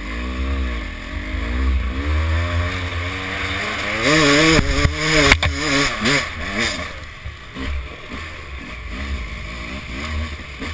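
Dirt bike engine revving up and down over rough ground. The hardest and loudest burst of throttle comes about four seconds in and lasts a second or so, with a sharp knock just after. The engine then drops back to lower, uneven blips.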